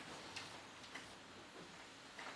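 Near-quiet room with a few faint clicks as a small book is slid slowly down a chalkboard.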